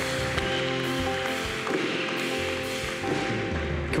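Live worship band softly holding sustained chords on keyboard and electric guitar.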